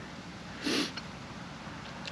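A single short sniff, about half a second in, over faint steady background noise.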